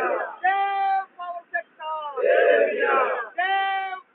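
Protesters chanting a slogan in unison, the same shouted phrase repeating about every three seconds, each ending in a long held cry.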